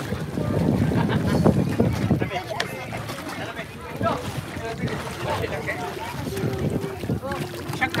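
Sea water splashing around swimmers, with wind on the microphone and scattered voices calling. The noise is heaviest in the first couple of seconds, then short voices and light splashes come and go.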